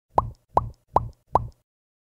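Four identical cartoon 'bloop' sound effects in quick, even succession, each a short blip rising in pitch. They are the pop-in sounds of an animated intro graphic.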